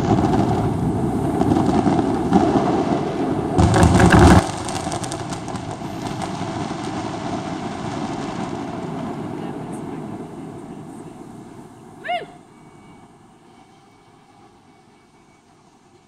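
The end of a fireworks finale: dense crackling and bangs building to a last loud burst about four seconds in, which cuts off sharply. A wash of distant noise and echo follows and fades away over the next several seconds. Near the end a single short call from a voice stands out.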